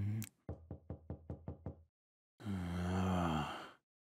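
A rapid run of about nine knocks on a door, a servant knocking. About half a second after the knocking stops, a man's voice makes one long, low wordless sound.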